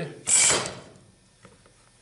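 Pipe clamp being slid and adjusted on its steel pipe: one short metallic rasp about a quarter of a second in.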